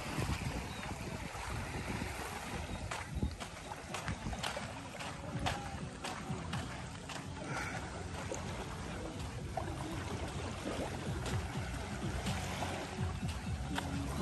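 Beach ambience by a calm sea: a steady low rumble and hiss, with faint music in the background and a few sharp clicks.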